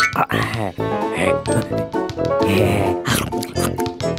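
Playful cartoon score with a melody and percussive accents, over which a cartoon character makes short wordless vocal noises.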